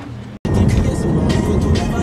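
An edit cuts in about half a second in to loud in-car sound on a highway at night: steady road and engine rumble, with music playing and voices over it.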